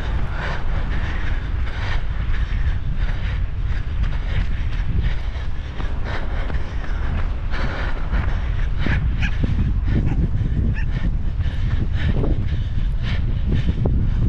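Wind buffeting the microphone in a steady low rumble, with a runner's footsteps crunching on a dirt path.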